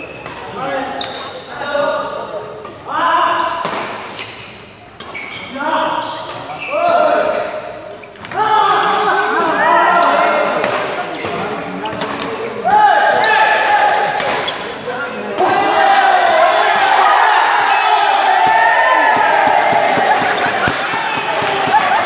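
Badminton rally: sharp racket hits on a shuttlecock, heard through the echo of a large hall. Voices of players and onlookers call and talk over the play, turning into steady chatter in the second half.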